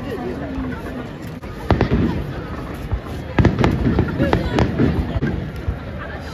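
Aerial firework shells bursting overhead. There is a sharp bang a little under two seconds in, then a quick run of several more bangs over the second half.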